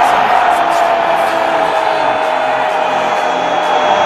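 A TV football commentator's long, held goal shout: a single drawn-out note that slowly falls in pitch, over background music.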